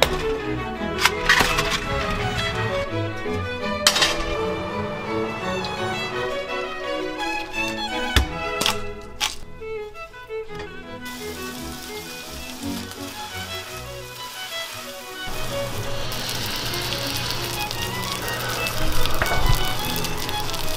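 Orchestral string music, with a few sharp clicks and knocks in the first half. About eleven seconds in, a slice of raw meat laid in a hot frying pan starts sizzling, and the sizzle grows louder from about sixteen seconds.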